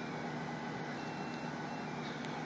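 Steady, faint background noise with no distinct event: the even hiss of outdoor ambience.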